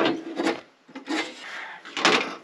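Gear being handled on a Jeep's fold-down tailgate table: two knocks about half a second apart, then a rasping scrape as a metal case slides across it.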